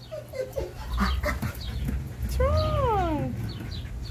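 An animal's long pitched call, rising and then falling, a little over two seconds in, among short high chirps and a low rumble.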